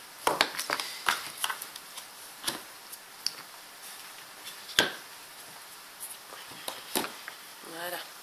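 Cardstock scrapbooking label and sticker sheets being slid, lifted and set down on a table: scattered taps and rustles of paper, the sharpest tap about five seconds in.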